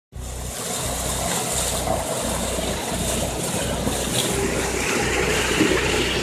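Road roller's engine running steadily, a continuous low hum with a noisy hiss above it.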